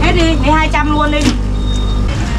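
A woman's voice speaks briefly for about a second over a steady low motor hum, with a short click as the voice ends.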